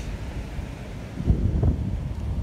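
Wind buffeting the phone's microphone, a low rumbling noise that gusts louder about halfway through.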